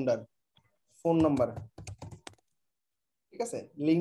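Computer keyboard keystrokes: a quick run of clicks about halfway through, as a phone number is typed into a web form. Short stretches of a man's speech come at the start, just before the keystrokes and near the end.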